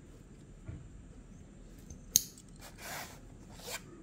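A knife blade working at a clear plastic clamshell blister pack: a single sharp click a little past halfway, then a few short scraping strokes of the blade on the plastic.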